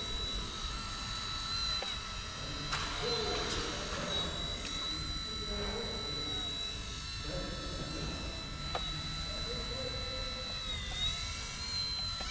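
Eachine E129 micro RC helicopter flying, its motor and rotor giving a steady high-pitched whine. Near the end the pitch dips briefly and rises again as the throttle changes.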